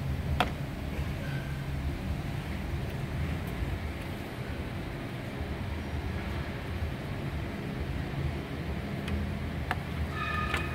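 Steady low hum of background machinery, with a sharp click about half a second in and a couple of faint clicks near the end.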